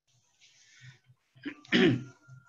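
A man clears his throat once near the end, a short loud rasp, after a soft breathy hiss in the first second.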